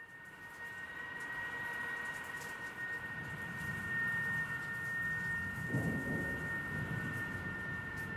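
Fence wire bowed with a violin bow, sounding one long steady high tone with fainter overtones held beneath it, over a low rumbling noise that swells briefly about six seconds in.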